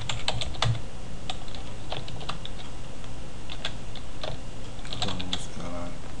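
Computer keyboard keystrokes: irregular clicks of someone typing a short line of code, a few keys at a time with short pauses between.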